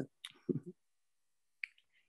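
A pause between speakers on a video call: mostly dead silence, with a few brief trailing voice sounds in the first second and a single short click about a second and a half in, just before speech resumes.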